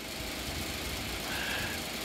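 A steady low hum of background noise with no speech.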